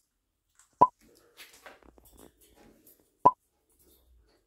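Two short, sharp pops about two and a half seconds apart, both alike and the loudest sounds. Between them is faint, irregular crackling and rustling from a quaker parrot chewing a pea pod.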